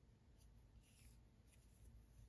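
Near silence, with a few faint soft rustles of cotton yarn being worked on a metal crochet hook, about half a second and a second in.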